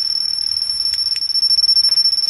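REM pod alarm sounding: a loud, steady, high-pitched electronic tone. The alarm signals that something is disturbing the field around its antenna.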